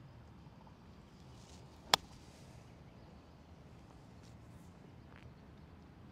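A golf club striking the ball once, a single sharp click about two seconds in, on a 70-yard pitch shot.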